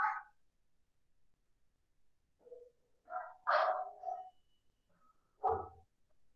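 A dog barking faintly in the background, a handful of short barks spaced a second or two apart.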